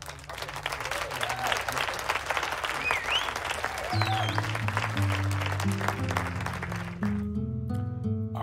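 Applause and cheering with a few whistles, a sound effect marking the end of a timed sprint, over background music whose bass notes come in about halfway through. The applause fades out near the end.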